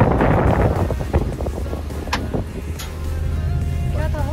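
Inside a moving car: a steady low rumble of engine and road, with wind noise loudest in the first second that then dies down. There are two short clicks around two seconds in, and faint music plays near the end.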